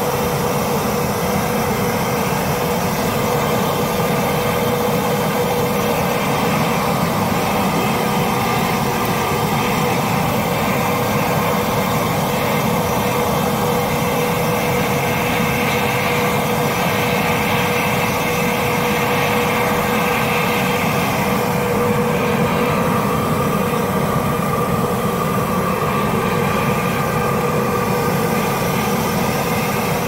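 Air blower running steadily with a constant whine, forcing air into a charcoal forge built from a gas grill, along with the rush of the air-fed fire. The air flow is way too much, even with the gate open.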